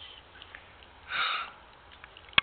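One short, breathy sniff or sharp intake of breath, about half a second long, a little after a second in.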